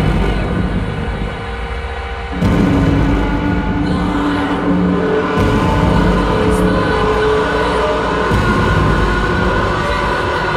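Loud, dark live music: a heavy low rumbling drone with long held tones. It swells and thickens about two and a half seconds in. Over it the singer vocalises into a handheld microphone.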